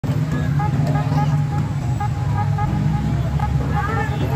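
Busy street ambience: a steady low rumble of vehicle engines, with indistinct voices of people around.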